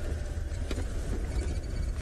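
Open safari game-drive vehicle driving off-road over rough bush ground, its engine and the ride making a steady low rumble.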